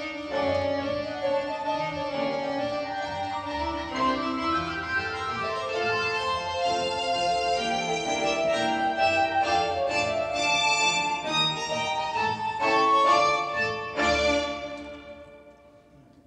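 Instrumental accompaniment music for a ballet barre exercise, sustained melodic notes and chords, fading out over the last couple of seconds.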